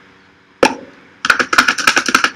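A man making clicking and popping noises with his mouth: one sharp click, then a quick run of clicks and pops from a little past the middle, as a mock language.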